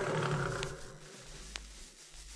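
A faint lion growl sound effect that swells in the first half second and then fades away, with two light clicks.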